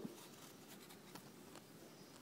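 Faint, scratchy rustling and a few light clicks from a European hedgehog nosing about in dry leaf litter, with a soft thump right at the start.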